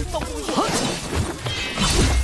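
Sword-fight sound effects, with blade swishes and crackling, shattering hits, over background music.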